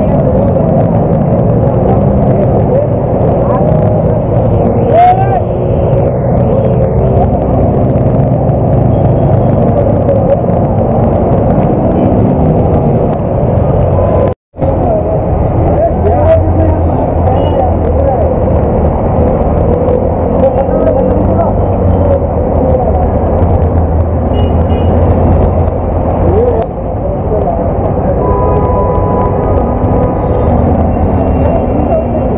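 Street noise on a flooded road: vehicle engines running as cars, auto-rickshaws and motorbikes push through floodwater, with people's voices mixed in. The sound cuts out for a moment about halfway.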